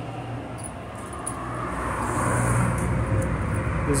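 Street traffic: a vehicle passing and growing louder through the second half, over a steady low engine hum.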